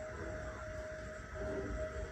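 Quiet music: a single long held note over a low rumble, with a few faint lower notes about one and a half seconds in.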